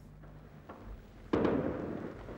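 A single sharp bang, like a gunshot or blast, about a second and a half in, trailing off over the next half second after a quiet start.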